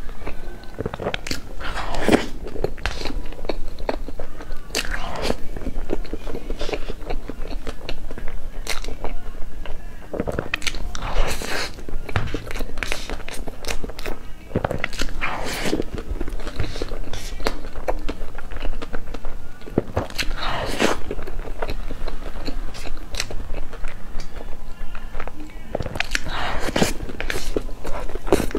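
Close-miked eating sounds of a person chewing mouthfuls of soft layered cream cake, with many short irregular smacks and clicks, and a metal spoon scraping into the cake.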